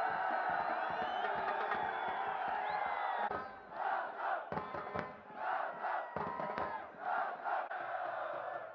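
Football stadium crowd cheering a goal with a steady roar of many voices. About three seconds in, it gives way to supporters chanting in rhythm, with dips between the shouts and a few beats of a bass drum.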